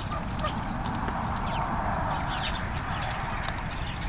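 Common pheasants pecking seed from a wooden feeder tray, a scatter of quick taps, with small birds chirping over a steady low rumble. A soft hiss swells and fades in the middle.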